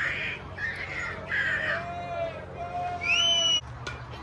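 Spectators at a youth baseball game yelling and cheering after a play, with long, drawn-out shouts and a shrill, high whoop or whistle about three seconds in, the loudest moment, which cuts off suddenly.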